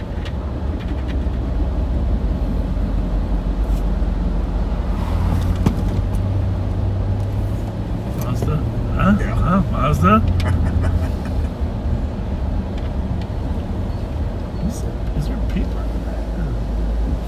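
Car cabin noise while driving slowly: a steady low engine and road rumble that grows a little louder for several seconds mid-way, with a brief voice about nine seconds in.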